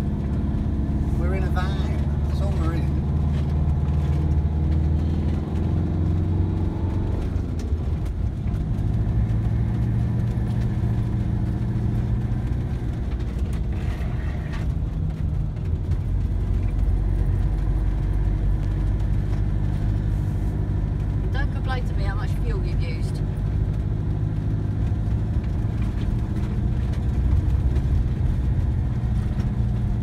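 Van engine and road noise heard from inside the cab while driving steadily, the engine's pitch dropping about seven seconds in.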